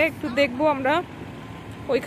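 A person talking in a high-pitched voice for about a second, then a short pause with only a low outdoor hum of traffic, before the talking starts again near the end.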